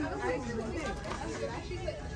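Indistinct chatter of people talking quietly in a shop, with no clear words.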